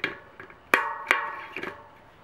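Bicycle wheel spokes struck by hand, giving a few sharp metallic pings that each ring briefly with several tones. The loudest ping comes just under a second in.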